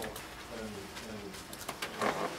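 A faint, low voice murmuring a short reply from across the room, with a few small clicks near the end.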